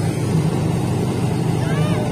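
Tractor diesel engine running steadily at a constant speed.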